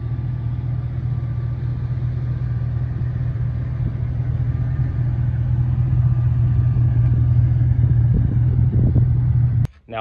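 1999 Chevrolet Silverado's 4.8-litre V8 idling with a steady low hum, growing a little louder about five seconds in.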